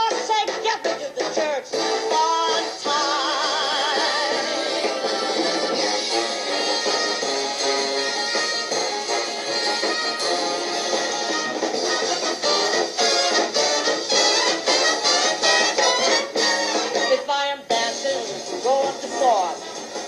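A show-tune song with the band playing an instrumental passage between sung verses.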